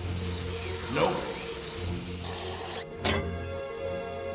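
Dark film score with a steady low pulse, a whooshing sweep about a second in and a sharp hit just after three seconds.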